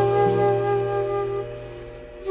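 Jazz flute holding one long note over a low bass note, both fading away over the last half second as the phrase ends.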